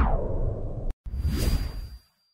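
Two whoosh sound effects from an animated title card. The first swells and fades away over the first second; after a brief gap, the second whoosh, with a thin high tone in it, rises and then cuts off abruptly at the end.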